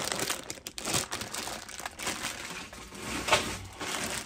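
A clear plastic bag holding small die-cast toy cars, crinkling and rustling irregularly as it is handled and turned over.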